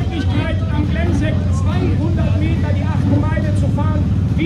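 A man's voice over a public-address system, with a steady low rumble from engines running beneath it.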